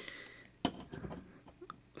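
Faint clicks and handling noise of split ring pliers working a small metal split ring open, with one sharper click a little over half a second in.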